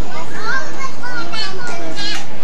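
Many children's voices talking and calling out over one another, with short high-pitched rising calls.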